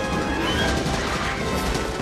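Film battle soundtrack: an orchestral score under crashing impacts and rifle fire, dense and loud throughout.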